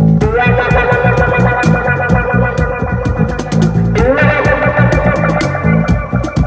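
Live improvised cigar box guitar trio. The cigar box guitar holds two long notes, each reached by a rising glide, one near the start and one about four seconds in. A bass cigar box plays a repeating low line underneath while a cajon keeps a steady beat.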